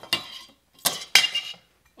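Aluminum channel pieces clinking against the solar panel's metal frame as they are set in place: three sharp metallic knocks, the loudest a little over a second in, with a brief ring.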